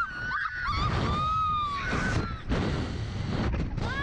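Two women riders screaming on a Slingshot reverse-bungee ride: several long, high wails one after another, over a steady rumble of wind buffeting the ride-mounted microphone.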